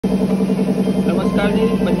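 A loud, steady machine drone with a fast, even pulsing beat, with a man starting to speak about a second in.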